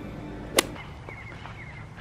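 A single sharp click a little over half a second in, over a low background, followed by a few faint high chirps.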